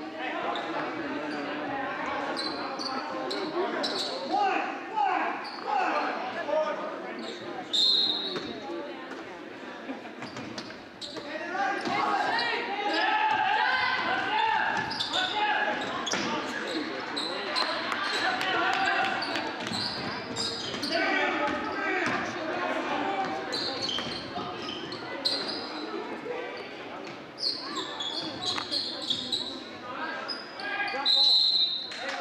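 Basketball dribbling and bouncing on a hardwood gym floor, with shouting and voices of players and spectators echoing through the gym. Short high sneaker squeaks come a few times.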